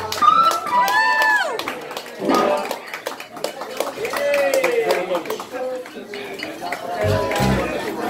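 Live band in a small bar playing loose electric guitar phrases with bent notes and a few low bass notes, mixed with audience voices and shouts.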